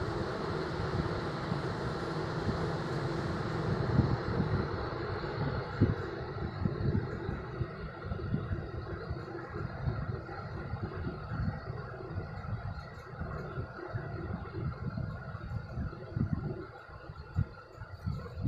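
Steady low rumbling background noise with faint hiss and irregular soft low thuds, quieter for a moment near the end.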